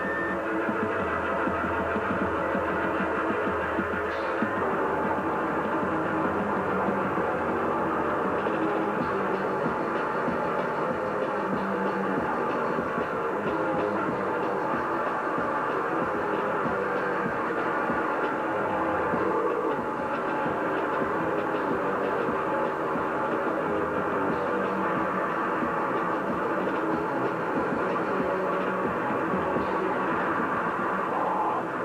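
Live noisecore band playing: a continuous, dense wall of distorted electric guitars and drums at a steady loud level, without breaks.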